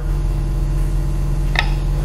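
Steady low machine hum, with a short, thin rising chirp about one and a half seconds in.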